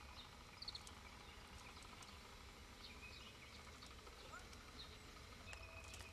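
Faint outdoor ambience: a steady low hum under scattered short, high chirps from distant birds.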